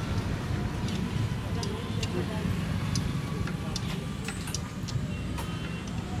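Workshop background: a steady low rumble like a nearby engine or traffic, with scattered light clicks and clinks and faint voices.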